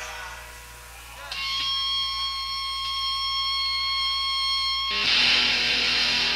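Live punk rock band with distorted electric guitar. A chord rings out and fades, then one high note is held steady for about three and a half seconds before the full band crashes in loud about five seconds in.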